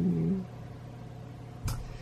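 A woman's voice trails off in a drawn-out hesitation sound for about the first half-second. Then there is only a steady low hum of room tone, with a single soft knock near the end.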